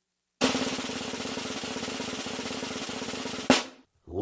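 Snare drum roll, starting after a moment of silence and running steadily, ending in one sharp accented hit near the end.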